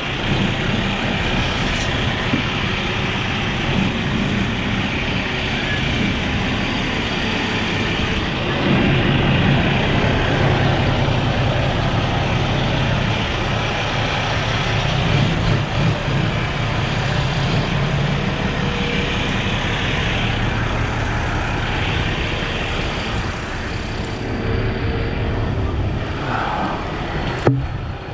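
Diesel engine of a Volvo semi tractor running as the truck pulls away under power, a steady low hum under a broad rush of noise that grows louder about eight seconds in.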